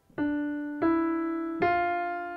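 Piano sound from a digital keyboard: a D minor triad played one note at a time, D, F and A struck about half a second apart and left ringing together.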